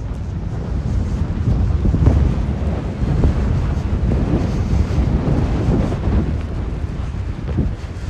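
Wind buffeting an outdoor microphone: a rumbling low roar that swells and eases, strongest through the middle seconds.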